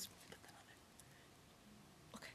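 Near silence: room tone with faint whispering.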